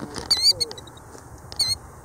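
A ground-nesting bird calling near its nest: a quick run of high, wavering notes about a third of a second in, and another short run near the end.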